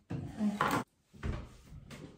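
A chair dragged across the floor with a scrape lasting most of a second, then a duller low knock as someone sits down at the table.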